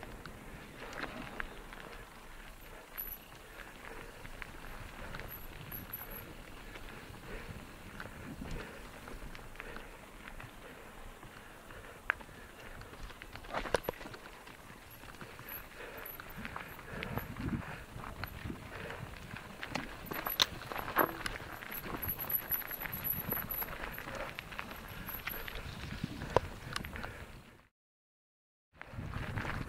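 Mountain bike rolling down a rocky dirt trail: tyres crunching over gravel and stones, with irregular rattles, knocks and a few sharper clacks from the bike over bumps. The sound cuts off abruptly just before the end.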